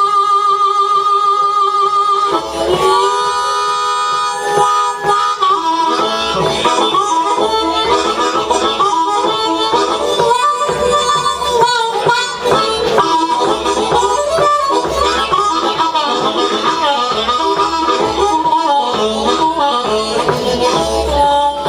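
Blues harmonica played cupped against a vocal microphone, amplified live. It opens with long held notes that waver, then moves into quicker, busier phrases from about six seconds in.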